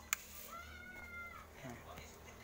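A single drawn-out, high-pitched animal call lasting about a second, starting about half a second in, preceded by a sharp click.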